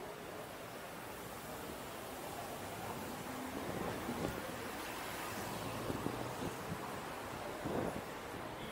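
Wind rushing over the microphone above a steady street background, with a few faint knocks in the second half.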